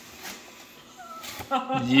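Faint rustling of a paper gift bag and tissue paper as a garment is pulled out, then, near the end, a loud, drawn-out, excited shout of "yes!".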